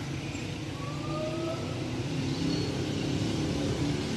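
Road traffic noise: a steady low rumble of passing motor vehicles that swells a little in the second half.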